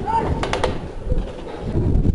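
An airsoft gun fires a quick burst of three sharp shots about half a second in, over a steady low rumble.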